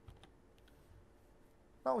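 A few faint, short computer clicks in the first second, as the lecture slide is advanced. A man's voice begins speaking near the end.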